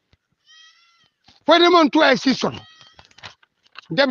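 A person speaking in short phrases, with a faint, brief high steady tone just before the voice begins.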